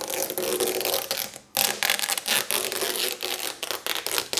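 Excess carbon-fibre vinyl wrap film being peeled off the edge of a car hood, the adhesive tearing loose in a continuous crackling rasp. There is a short break about a second and a half in.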